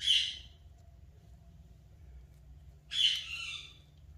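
Indian ringneck parakeet giving two short harsh squawks, one right at the start and another about three seconds later.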